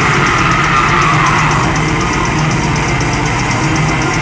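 Metal band playing live at full volume: heavy distorted guitars and drums, with a steady cymbal beat ticking throughout.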